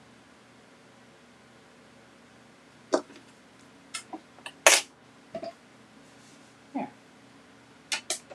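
Hard plastic clacks and knocks as clear acrylic die-cutting plates and a small die-cutting machine are handled and set down on the table. After a few quiet seconds there are about half a dozen sharp taps, the loudest about halfway through.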